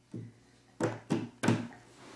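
A soft thump, then three sharp slaps of a toddler's bare hands on a wooden table top, about a third of a second apart.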